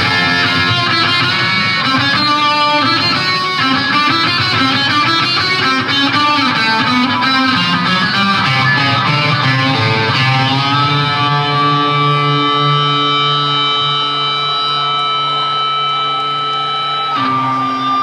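Live rock band music led by electric guitar through effects. A busy run of notes gives way, about eleven seconds in, to long held notes.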